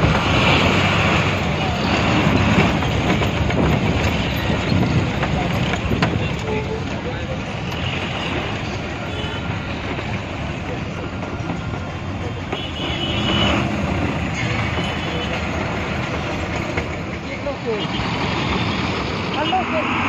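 Steady engine and road noise of an MSRTC Ashok Leyland ordinary bus under way, heard from a seat by an open window.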